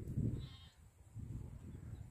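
A short, high, wavering animal call about half a second in, over a low rumbling noise that drops away after the first second.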